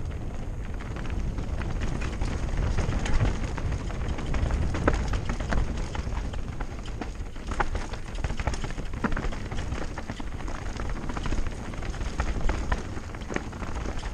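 Mountain bike riding fast down a rocky dirt singletrack: tyres rolling and crunching over stones and roots, with frequent sharp rattles and clacks from the bike over a steady low rumble.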